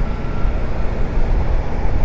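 Wind rushing over the rider's microphone, mixed with road and engine noise from a Zontes 350E scooter cruising steadily at about 37 km/h.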